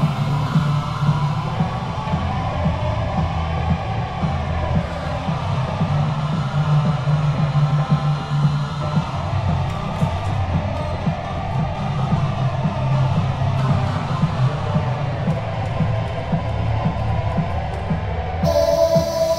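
Electronic house music: sampled house tracks layered with a software synthesizer played from a MIDI keyboard, over sustained bass notes that shift in pitch.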